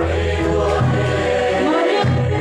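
A large crowd singing together, many voices holding sung notes over a steady low bass line: a Mizo song of the kind sung at a house of mourning (khawhar zai).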